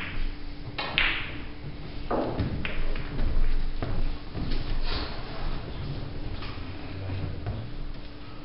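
Snooker balls clicking on the table: a sharp click about a second in, then a duller knock and further clicks over the next few seconds as cue ball and object balls strike each other and the cushions.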